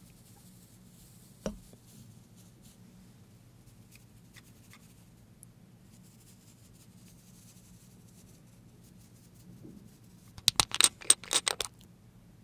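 Small glass jar of edible gold flakes being handled over a bowl: faint rustling and light ticks, one sharp click about a second and a half in, then a quick run of loud sharp clicks near the end as the jar is tipped over the bowl.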